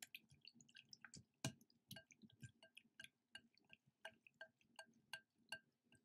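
Whisk stirring runny slime in a glass bowl: faint, irregular wet clicks and ticks, several a second, with one louder click about one and a half seconds in. The slime is really watery, which the maker puts down to using too much activator.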